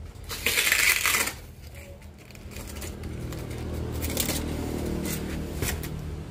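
Packing tape pulled off the roll in a loud rasping burst about a second long as it is wrapped around a cardboard parcel, followed by a few shorter crackles of tape and cardboard. A low steady hum rises underneath from about midway.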